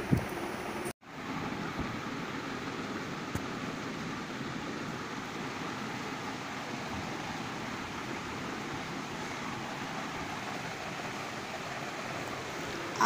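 Steady, even hiss of background noise with no distinct events, after the sound cuts out briefly about a second in.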